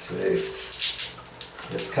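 Water trickling and splashing from a leaking shower valve, in uneven spurts of hiss.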